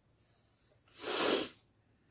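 A single short, sharp exhale from a person, about a second in and lasting about half a second.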